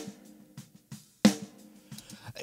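Acoustic snare drum from a live drum recording, played back soloed: two snare hits about 1.3 seconds apart, each ringing on after the strike. Not bad, but wanting to be crisper and punchier.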